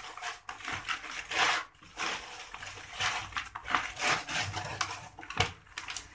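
Hands mixing and rubbing damp, crumbly fishing groundbait in a plastic basin: an irregular run of gritty rustling and scraping strokes.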